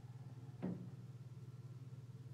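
Steady low background hum, with one short, faint falling sound a little over half a second in.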